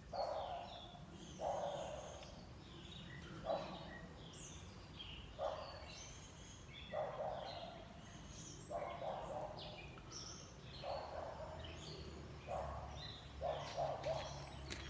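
Birds chirping and calling, with short calls coming every second or two.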